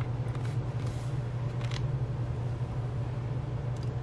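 A steady low background hum, with faint light taps and rubbing from a hand pressing an inked clear stamp onto cardstock in a hinged stamping platform.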